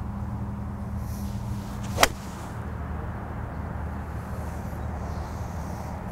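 A golf six-iron, played as a soft three-quarter shot, striking the ball: one sharp, crisp click about two seconds in. A steady low hum runs underneath.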